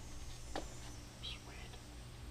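Quiet workshop: a steady low hum with a few faint small clicks and scrapes from hands working the bolts and cam gear, about half a second in and again past the middle.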